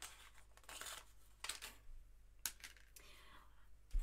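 Paper cardstock being handled on a craft cutting mat: a few short rustles and scrapes, about one a second, with a softer brush of card near the end.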